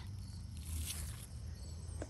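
Faint rustling of squash leaves being moved by hand, over a low outdoor rumble, with a faint high insect note near the end.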